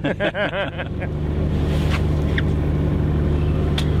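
A fishing cutter's engine running steadily, a low even drone, with a few faint short clicks over it.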